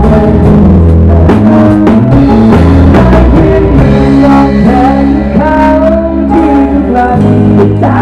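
Live band playing a Thai pop-rock song: drum kit with cymbals keeping the beat, bass, electric guitar and a singer's voice.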